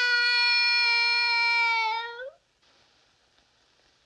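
A small boy crying out in one long, held wail that slides up in pitch and breaks off about two seconds in.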